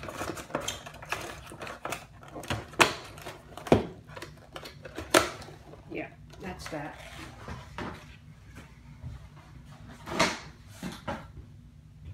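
Hands handling unboxing packaging: cardboard box and plastic pieces being picked up and set down on a tabletop, giving a string of irregular sharp taps and clicks with rustling between them.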